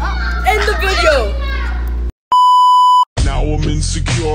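A girl talking, cut off suddenly by a single steady high-pitched beep lasting under a second, the kind of bleep dubbed over a censored word. After a brief silence, a pop song with singing and a beat comes in.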